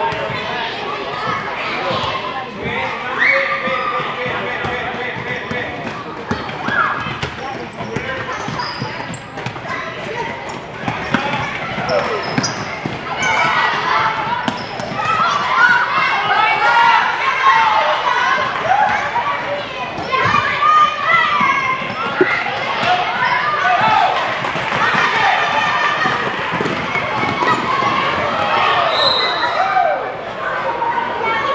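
Basketball bouncing on a hardwood gym floor during a youth game, amid the chatter and shouts of players and spectators.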